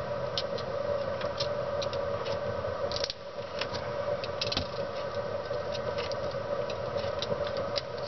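Light, scattered clicks and scratches of small-scale soldering work: a soldering iron tip, tabbing wire and a steel ball-bearing weight being moved and set down on the thin solar cells. A steady background hum runs under it.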